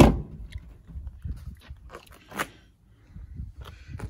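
A car's rear passenger door is shut with a thump right at the start, followed by footsteps crunching on gritty ground and another sharp knock about two and a half seconds in.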